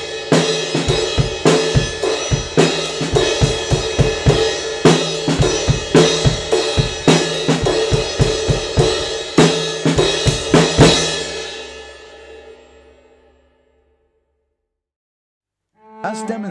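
Drum kit playing a beat of snare, kick, hi-hat and cymbals, picked up by a 1930s STC 4021 moving-coil omnidirectional microphone used as a drum overhead. The playing stops about eleven seconds in on a final crash that rings out and dies away into silence.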